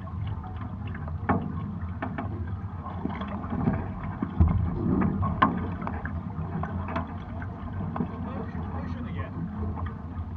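Water rushing and slapping along the hulls of a Hobie 16 catamaran under sail, a steady low wash with scattered sharp clicks. It swells in the middle, with a few louder slaps.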